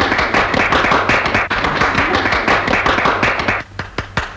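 Hands clapping in applause after a song-and-dance number, thinning out to a few scattered claps near the end.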